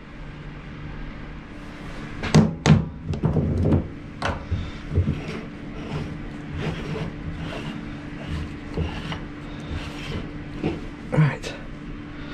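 Heavy steel three-jaw lathe chuck being worked loose and lifted off the lathe spindle: a run of metal knocks and clunks, loudest a couple of seconds in, then scattered lighter knocks and rattles. A steady low hum runs underneath.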